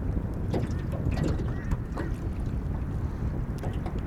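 Wind buffeting the microphone: an uneven low rumble throughout, with a few faint short ticks and brief higher sounds over it.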